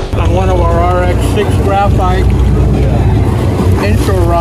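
Sportfishing boat's engine running with a steady low drone, with short bursts of voices over it.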